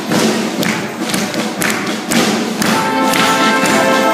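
A live band playing: drum strikes through the first part, then sustained brass notes come in a little under three seconds in and hold as chords.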